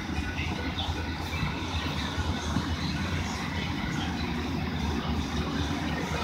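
Wind rumbling on a phone's microphone outdoors, a steady low buffeting with faint distant background sounds above it.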